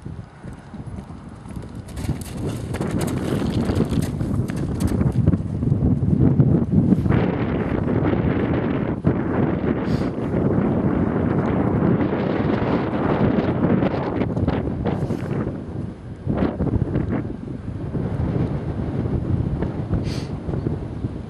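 Hoofbeats of a horse cantering on grass and jumping a small cross-country fence a few seconds in, under heavy wind noise on the microphone that swells from about two seconds in.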